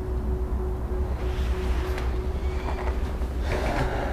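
Footsteps scuffing and crunching on gritty rubble, twice in irregular bursts with a sharp click between, over a steady low rumble.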